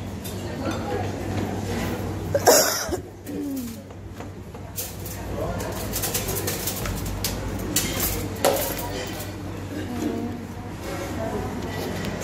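Canteen ambience: murmur of other people's voices with dishes and cutlery clinking, and one louder sharp clatter about two and a half seconds in.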